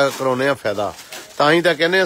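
A man's voice in several drawn-out phrases with a low, fairly level pitch, speaking or half-singing, with a short gap about a second in.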